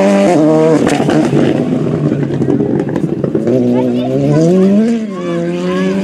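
Volkswagen Polo GTI R5 rally car's turbocharged four-cylinder engine at racing speed. The revs drop about half a second in, then climb steadily for over a second before a short dip near the end.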